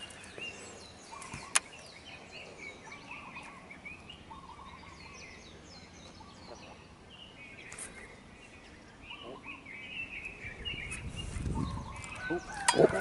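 Faint birdsong of many short chirps, with a single sharp click about a second and a half in and a low rumble building near the end.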